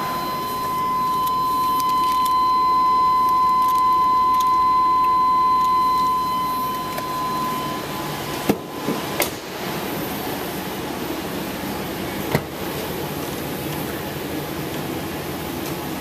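A steady, high electronic warning tone from the truck's cab, the kind sounded with a door open, runs for about eight seconds over a constant hiss, then cuts off. A few sharp knocks and clicks of doors and latches follow as the rear hatch is popped open.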